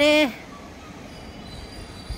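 A woman's drawn-out voice ends about a third of a second in. Then comes steady outdoor city background noise from the rooftop, with a faint high whine.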